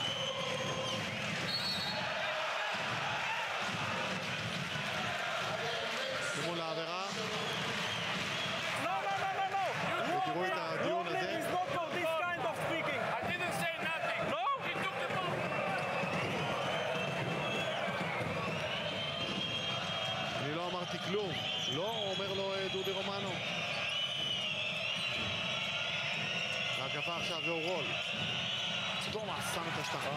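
Basketball being dribbled and bouncing on a hardwood court during live play, over continuous arena crowd noise with many voices shouting.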